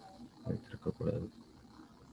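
A person's voice making three short syllables or vocal sounds, close together about half a second to a little over a second in.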